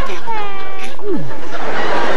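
A comic character voice giving a whiny cry that falls slightly in pitch, then a short low groan sliding down, over laughter.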